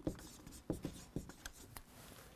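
Faint scratching of writing on paper, with a few soft ticks.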